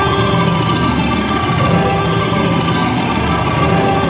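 Live rock band playing an instrumental passage, loud and steady: a Telecaster-style electric guitar over bass and drums.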